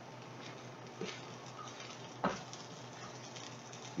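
Faint, steady sizzle of a scrambled egg, hash brown and sausage mix cooking in a small steel pan over a burning solid fuel tab, with a few light taps of a fork against the pan.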